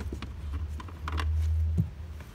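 A few faint clicks of a hand tool working a 10 mm nut on the convertible top's frame, over a low rumble that gets louder about a second in and stops with a click near the end.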